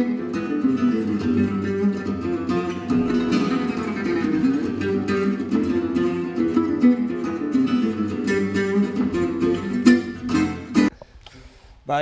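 Acoustic guitar duet in a flamenco and gypsy-jazz (jazz manouche) style: fast plucked melodic lines over strummed chords, with a few sharp strummed accents near the end. The playing stops about eleven seconds in.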